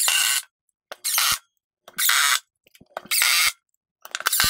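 DeWALT 20V Max XR cordless drill-driver driving screws through a walnut runner into a plywood sled top, in four short bursts of about half a second each, roughly a second apart.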